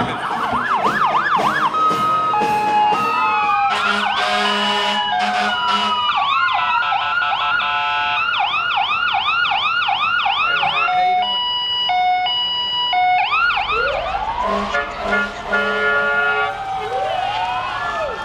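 Several fire-apparatus sirens sound at once. Fast repeating yelp sweeps overlap slow rising-and-falling wails, and about eleven to thirteen seconds in there is a stretch of alternating two-tone steps. Long steady horn tones are layered in with them.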